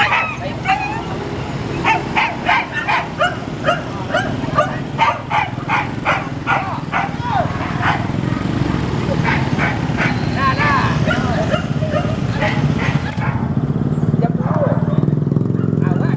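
Dogs barking and yipping in quick repeated calls, two to three a second, for the first half. The calls then thin out to a few whines over a steady motorcycle engine hum that grows louder near the end.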